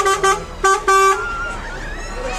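DAF truck's horn sounded in a run of short toots, one steady note, the last ending about a second in.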